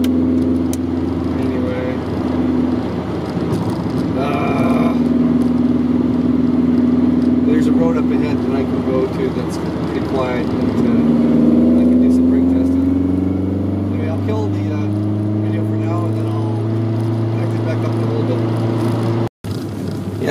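Engine and exhaust of a 1983 VW Rabbit GTI heard from inside the cabin while driving: a steady note for the first half, then a gradual rise in pitch through the second half as the car accelerates.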